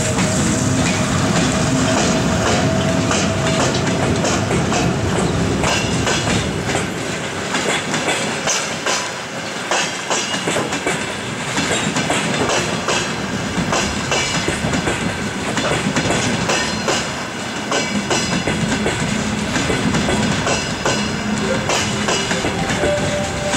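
A passenger train pulling out behind a ЭП1М electric locomotive: the locomotive goes past with a steady tone for the first few seconds, then the coaches roll by. From about six seconds in, their wheels clatter and click irregularly over the rail joints.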